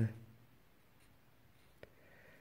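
Felt-tip marker writing on paper, faint, with a small click of the tip on the paper near the end.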